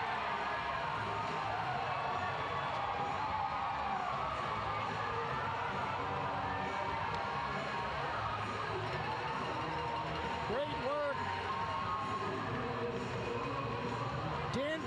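Music playing over an arena's public-address system after a goal, mixed with the noise and voices of the crowd.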